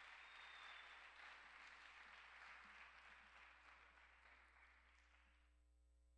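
Faint audience applause in an auditorium, beginning just as the video piece ends and dying away after about five seconds, over a low steady electrical hum.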